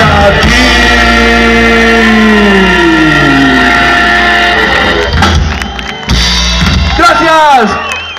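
Garage rock band playing live through a stage PA: held notes with long, falling pitch slides, a short dip in loudness about six seconds in, then more falling slides near the end.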